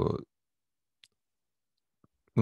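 A man's word trails off at the start, then dead silence broken by a single faint click about a second in.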